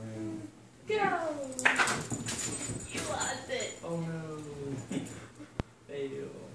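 A puppy whining with a high, falling cry about a second in as it goes after a toy dangled on a fishing line, among people's voices.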